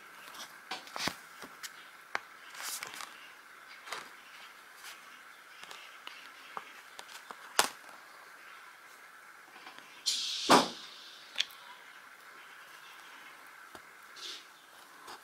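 Needle and embroidery thread being worked through plastic canvas by hand during backstitching: scattered small clicks and ticks, with a brief rustle and a sharper knock about ten seconds in.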